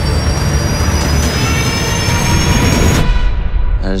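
Trailer sound design: a loud, dense roar over a deep rumble, with a whine that rises slowly in pitch. About three seconds in, the high roar and whine cut off abruptly, leaving only the low rumble.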